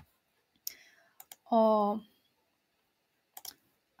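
A few short, sharp clicks spread over the few seconds, with a single drawn-out spoken "o" in their midst.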